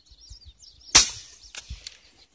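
A single suppressed handgun shot about a second in, a sharp crack with a short echo trailing off, followed by a few faint clicks.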